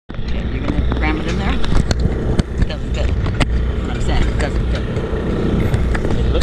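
Handling noise of an action camera being gripped and pushed into a holder: repeated sharp clicks, knocks and rubbing against the camera body, over a steady low rumble, with voices.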